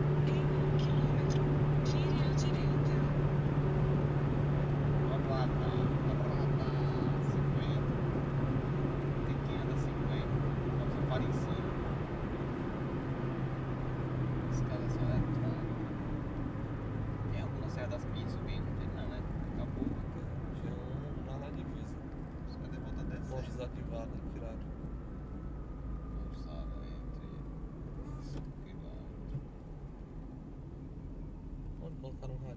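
Car engine and road noise heard inside the cabin at highway speed. The engine's steady hum drops in pitch and the overall noise eases off over the second half as the car slows.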